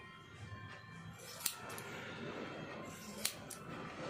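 Hairdresser's scissors snipping hair: two sharp snips, a little under two seconds apart.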